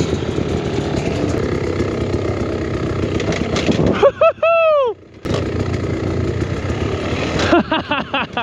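Beta X Trainer 300 single-cylinder two-stroke dirt bike engine running under throttle on a rough trail. About four seconds in it is broken by a brief high tone that rises and falls, then a short dip and a sharp click, before the engine noise picks up again.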